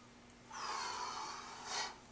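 A person's forceful breath out through the nose, lasting over a second and ending in a sharper puff: the effort breath of rising out of a dumbbell single-leg deadlift.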